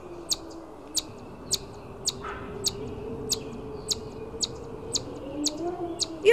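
A small bird chirping: short, sharp, high single chirps repeated at an even pace, a little under two a second, over a faint steady low tone.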